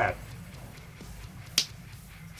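Trading cards being handled on a playmat: a faint tap about a second in, then one sharp card click about a second and a half in.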